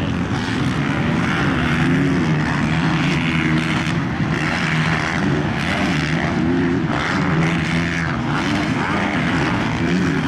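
450-class motocross race bikes running on the track, their engine pitch rising and falling as the riders work the throttle through the turns and jumps.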